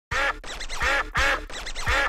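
Duck quacks repeated in an even rhythm like a beat, a loud quack about every half second with softer ones between, over a steady low bass hum.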